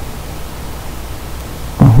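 Steady low hiss with a faint low hum, the background noise of the voice recording. Near the end a man says a brief 'uh-huh'.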